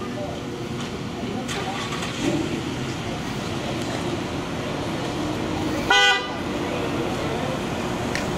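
A car horn gives one short toot about six seconds in, over a steady background of vehicle and outdoor noise.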